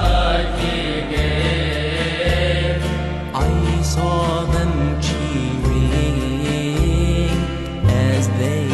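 Music: chant-like singing with a wavering melody over deep held bass notes that step to a new note about once a second.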